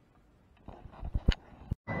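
Near silence, then a few soft clicks and knocks about a second in, one sharper than the others, like a camera being handled. The sound cuts off abruptly just before the end, and a steady cabin noise begins.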